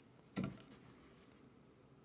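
One short, soft knock about half a second in: a large disk being set down on a tabletop.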